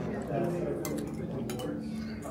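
A few light clinks of cutlery and dishes, over background talk and soft music in a restaurant dining room.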